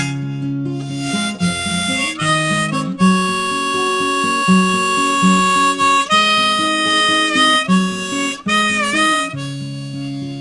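Harmonica played in a neck rack, carrying the melody with held notes, one long note held for about three seconds and a note bent down and back up near the end, over strummed acoustic guitar chords.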